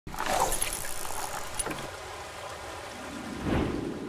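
A steady rushing, hiss-like noise under an animated logo, with a couple of faint clicks about halfway through and a short swell near the end.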